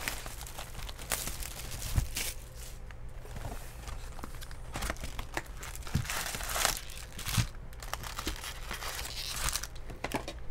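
Plastic wrapping crinkling and tearing as a sealed box of Bowman baseball cards is opened and its wrapped packs are pulled out, with a few sharp clicks and knocks of packs against the box.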